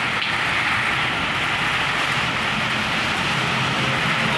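Heavy storm rain falling steadily onto a waterlogged street, an even hiss with no let-up.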